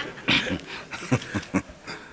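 A man chuckling in a run of short, breathy bursts.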